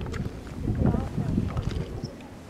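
Wind buffeting a camcorder microphone outdoors, with low voices talking nearby.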